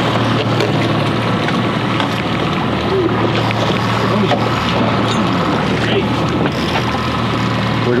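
Boat outboard motor running at a steady low drone, with wind and water noise over it.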